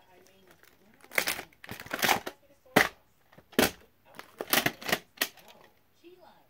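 Plastic VHS clamshell case being handled and turned over by hand: a quick run of sharp clicks and knocks with crinkly rustling between them, ending about a second before the end.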